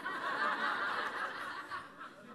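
Audience laughing softly, a short ripple of chuckles from many people that fades near the end.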